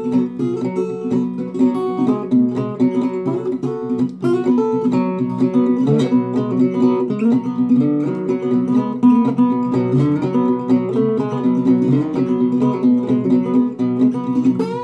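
Acoustic guitar in open G tuning played slide-style with a bottleneck slide: a steady boogie rhythm with a repeating bass pattern, and notes that glide in pitch where the slide moves along the strings.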